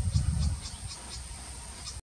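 Short high-pitched chirps repeated about four times a second over a steady high whine, with a low rumble that fades after about half a second.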